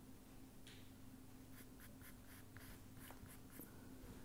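Faint scratching of a pen writing: a quick run of short strokes starting about a second and a half in and lasting about two seconds, over a steady low hum.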